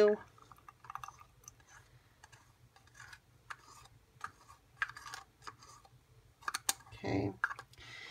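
A plastic stir stick scraping and tapping against a small plastic cup as thick blue paint is scraped out into a glass jar: faint scattered clicks and light taps, with a few sharper clicks near the end.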